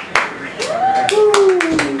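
A small audience applauding with scattered claps, and a long, falling cheering voice over the clapping in the second half.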